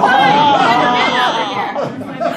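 A small audience laughing and chattering all at once, many voices overlapping, loudest in the first half and dying down near the end.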